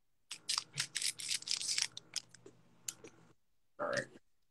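Scissors cutting open the foil wrapper of a Pokémon booster pack. For about three seconds there is a quick run of snips and crinkles, which then stops.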